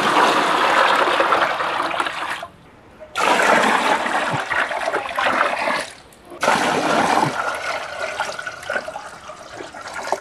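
Water poured from a plastic can into a fish tank, splashing onto the water's surface. It comes in three pours of a few seconds each, broken by short pauses, and the last one tails off.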